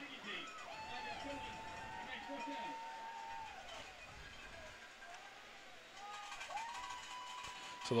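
Faint, distant voices from players and officials on the field, with a long steady tone held twice.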